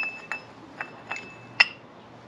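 Small metal clutch parts clinking against a motorcycle's clutch pressure plate and hub while being fitted: about five sharp clinks with a brief metallic ring, the loudest near the end.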